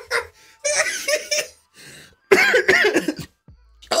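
A man laughing hard, in two bursts of rapid pulses with a short pause between them.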